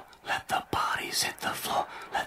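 A person whispering in short, choppy phrases, with a few light clicks.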